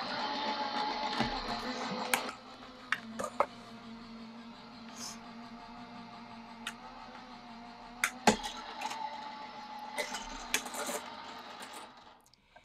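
Gemini Junior electric die-cutting machine running, its motor drawing a plate sandwich through the rollers with a steady hum. The hum is louder for the first two seconds, and a few sharp clicks come from the plates being handled.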